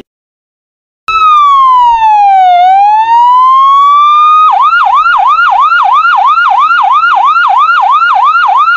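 Ambulance's electronic siren: after a second of silence it sounds one slow wail that falls and then rises again, then switches to a fast yelp of about four sweeps a second.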